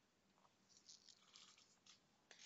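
Near silence: room tone, with a few very faint short ticks.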